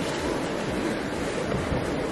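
Steady rushing noise of a wood fire burning close to the microphone, mixed with wind buffeting the microphone.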